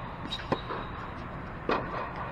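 Tennis balls struck by rackets during a doubles rally, two sharp hits about a second apart, over a steady background hum.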